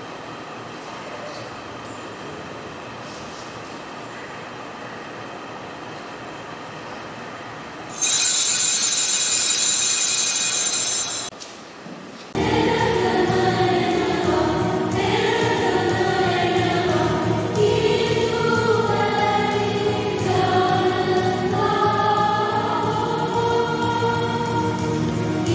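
Catholic altar bells shaken in a continuous ringing for about three seconds, as rung at the consecration of the mass; about a second later a choir starts singing and carries on. Before the bells there is only a faint steady room hum.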